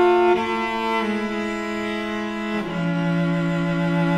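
Solo cello playing long, sustained bowed notes, changing note about a second in and moving down to a lower held note about two and a half seconds in.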